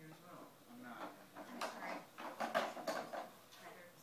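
A plastic baby walker knocking and clattering as it rolls across the floor, with a burst of quick knocks and rattles in the middle, the loudest a little past halfway.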